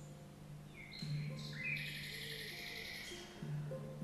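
Calm background music with held low notes that shift every second or two. High chirping like birdsong comes in about a second in and fades out around three seconds in.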